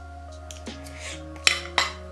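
Background music with two sharp clinks about a second and a half in and a moment apart: a metal fork knocking on a ceramic plate.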